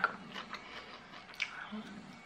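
Faint small crunches and clicks of popcorn being handled and eaten, with a few brief sharp sounds over a quiet room.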